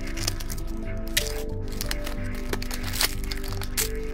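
Background music with a steady bass beat, over scattered sharp cracks and crinkles of a plastic-and-cardboard blister pack being cut and pried open.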